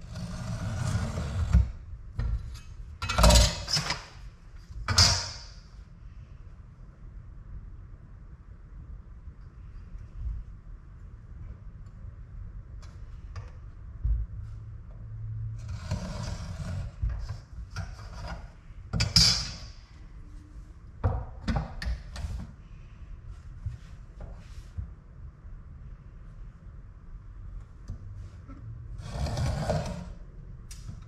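A marking knife scored across a wooden slab along a square, with a speed square and a steel ruler set down and slid on the wood: a scatter of short scratchy strokes and light knocks. A low steady hum runs underneath.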